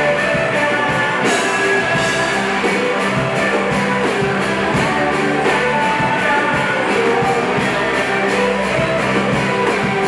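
Live indie rock band playing: electric guitars, bass and drums on a steady beat, with a male voice singing. A cymbal crash comes about a second in.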